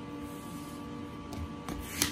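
Hands folding and creasing the taped edge of a vinyl banner: a faint rubbing of fingers over the material, with a couple of light clicks near the end, over a steady background hum.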